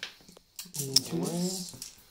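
Plastic dice clicking as a hand gathers them up off the gaming mat after a roll, one sharp click about a second in, with a short wordless vocal sound over it.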